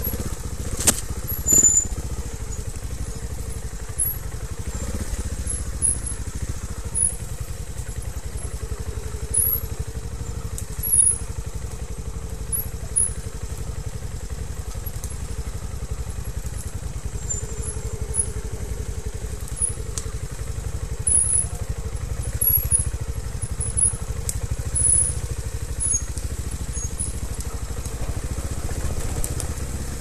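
Trials motorcycle engine running steadily at low revs while the bike picks its way slowly over rough ground, with short throttle blips. A few sharp clicks and knocks come through, the loudest at about a second in.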